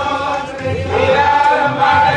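A group of Hindu temple priests chanting in unison on long held notes, pausing briefly just before the middle before taking up the chant again.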